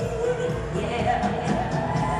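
Live concert music: a piano-led song played with a band, drums included, running on without a break.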